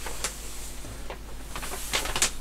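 Rustling and crackling of a large paper poster being handled and shifted, with a sharp crackle just after the start and a swelling rustle near the end, over a steady low hum.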